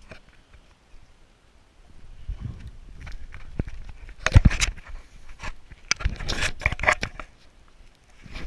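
Rustling, knocks and scrapes of hands and gear handling a freshly landed lake trout on the ice. The sound starts about two seconds in, has one heavy thump about halfway through and then a quick run of clicks and scrapes.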